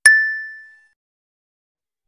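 A single bright ding sound effect, struck once and ringing out, dying away in under a second.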